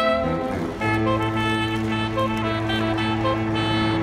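Saxophone quartet of baritone, tenor, alto and soprano saxophones playing together. After a brief break in the first second, a long low note and chord are held while short repeated higher notes sound above them.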